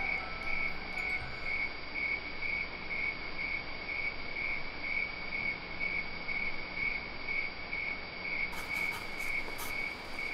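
Crickets chirping steadily, about two chirps a second, as a night-time background. Faint short clicks join near the end.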